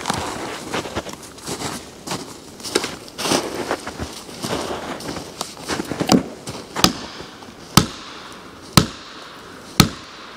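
Felling wedges in the back cut of a hickory tree being pounded with an axe. There are smaller irregular knocks and crunching at first, then sharp single strikes about once a second in the second half. The wedges are needed because the dense hickory fibres still hold the tree upright.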